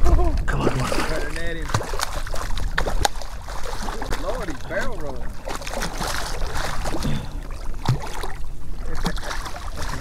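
A hooked red drum thrashing at the surface beside a kayak, with repeated sharp splashes, while a man makes a few wordless exclamations.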